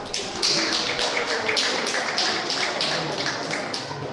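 Steady, evenly paced tapping, about three taps a second, over faint music.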